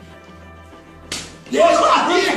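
A single sharp slap about a second in, followed half a second later by loud voices crying out.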